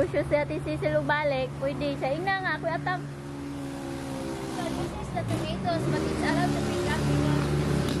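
A motor vehicle's engine running nearby. Its steady low hum grows louder over the second half. A person's voice is heard over the first three seconds.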